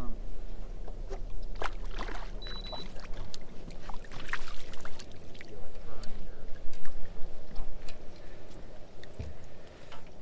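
A crappie is reeled in on a spinning rod and lifted into a boat, giving scattered clicks and knocks from the reel, rod and hull, with light water splashing. A low hum sounds for the first few seconds.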